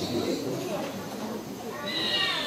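A young girl's voice speaking into a microphone, rising to a higher-pitched stretch near the end.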